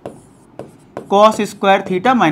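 Chalk tapping and scratching on a blackboard as an equation is written, faint short strokes, with a man's voice speaking over it about a second in.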